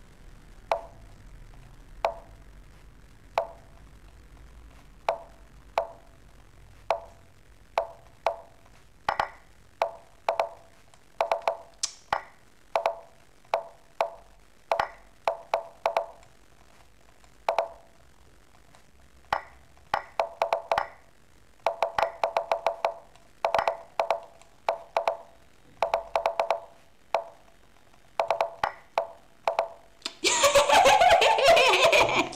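Lichess piece-move sound effects during a one-minute bullet game: short wooden clicks with a brief ring, one per move. They come about once a second at first, then in quick runs of several in a row in the second half as both clocks run down to a few seconds.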